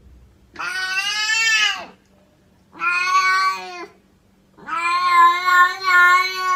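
A cat meowing three long, drawn-out meows, each over a second long, the last one the longest; the meows sound like "love".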